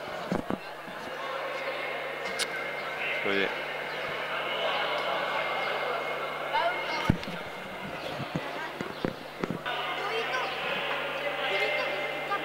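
Many voices chattering in a reverberant sports hall, with a ball bouncing on the court floor a few times, the thuds clustered near the middle and late in the stretch.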